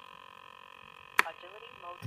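A toggle switch on a FrSky Taranis radio transmitter flicked once about a second in, a single sharp click, selecting agility mode. A faint steady electronic hum sits underneath.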